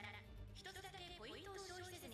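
Faint anime episode audio turned down low: a voice speaking with quiet music beneath it.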